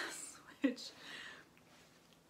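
A woman's soft, breathy speech: the word "which" and some half-whispered breath, then a short pause.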